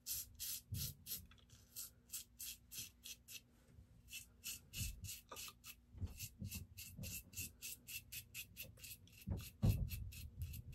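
Stainless steel safety razor scraping through stubble on a lathered face, in short, quick strokes of about two to three a second. A few low thumps come through as well, the loudest near the end.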